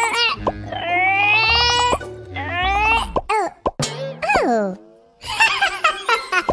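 High-pitched cartoon character vocalizations: long straining cries that bend in pitch, one falling away about four seconds in, and a run of short cries near the end, over background music with a low bass line.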